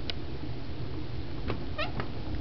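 A kitten gives one short, high-pitched mew near the end, just after a faint tap, over a steady low background rumble.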